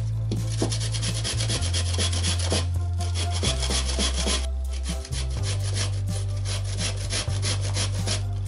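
Raw potato being grated on a flat stainless-steel hand grater: rapid repeated rasping strokes, with two short pauses.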